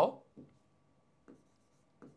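A stylus writing on the glass of an interactive smart-board screen: a few faint, soft touches and strokes.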